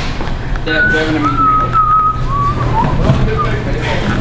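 A person whistling a few notes: a short high note, then a longer held one, then lower notes that slide downward. Underneath runs a steady low hum with some background voices.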